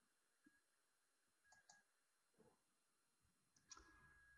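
Near silence, with a few faint brief clicks: two close together about one and a half seconds in and a slightly louder one near the end.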